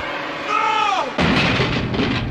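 Sound-effect falling whistle that slides down in pitch for under a second, then a sudden loud crash about a second in: the effect for a radio being thrown away and smashing.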